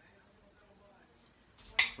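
A metal spoon stirring and scraping faintly on a ceramic plate of soft melted ice cream, then a sharp clink against the plate near the end.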